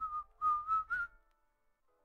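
A person whistling a few short notes in a clear, steady pitch that wavers slightly, stopping about a second in.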